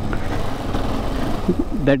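KTM 390 Adventure's single-cylinder engine running as the bike rides along, mixed with wind rush on the microphone that swells about halfway through.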